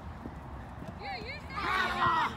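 Players' voices calling out on a soccer pitch: a short call about a second in, then a louder, high-pitched shout near the end, over soft irregular thuds of running feet on turf.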